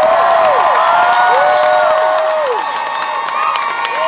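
Crowd cheering and whooping over applause: many voices holding long rising-and-falling "woo" calls above steady clapping, loudest in the first couple of seconds.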